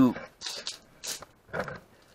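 A man's voice trailing off at the end of a sentence, then a pause broken only by a few short, faint breath or mouth sounds.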